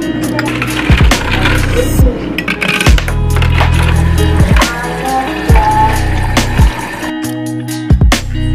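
Background music with deep bass notes and a recurring kick drum.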